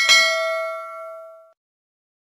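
Notification-bell 'ding' sound effect: a single struck bell tone that rings out with several overtones, fades, and cuts off abruptly about a second and a half in.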